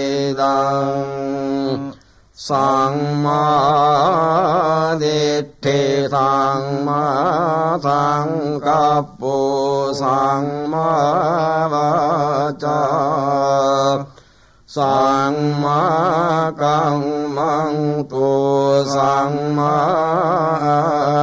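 Buddhist pirith chanting: a voice intoning long, wavering held notes, breaking briefly for breath about two seconds in and again around fourteen seconds.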